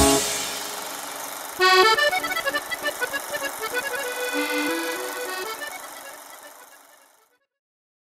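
The band's final chord of a Romagna liscio song dies away. About a second and a half in, a solo accordion starts a short, slow closing melody of single held notes that fades out a little before the end.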